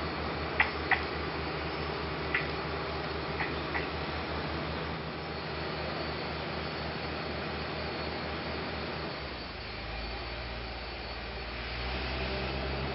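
Steady drone of distant construction machinery with a low, rapid throb that stops about three-quarters of the way through, leaving a lower rumble. A few short, sharp chirps sound over it in the first few seconds.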